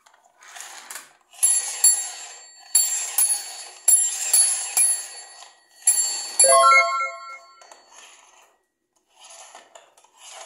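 Battery-powered transparent gear toy train making its electronic bell sound, a string of sharp ringing dings over the whirr of its plastic gears, followed by a short run of lower tones about six and a half seconds in.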